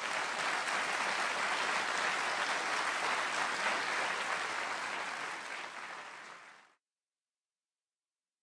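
Audience applauding, easing slightly before cutting off suddenly near the end.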